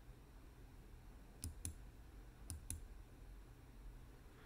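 Four faint computer mouse clicks in two quick pairs, about a second apart, against near silence.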